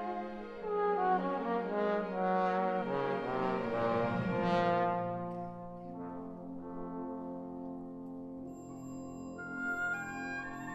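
Two solo trombones playing with a symphony orchestra in a moving melodic passage of a concerto, the music softening to quieter held notes about six seconds in.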